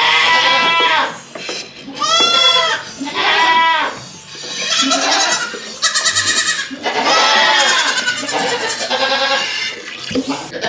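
Nigerian Dwarf goats bleating loudly: about seven long calls in quick succession, at different pitches, some overlapping.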